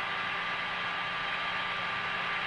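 Steady hiss with a faint, even hum: the background noise of the Apollo 8 command module's onboard voice recording, with no crew voice in it.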